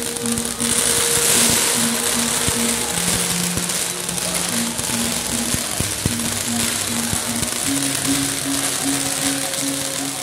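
Stage pyrotechnic spark fountains and flames hissing, strongest a second or two in, with scattered sharp crackles. Under it, music plays a repeating pattern of short low notes.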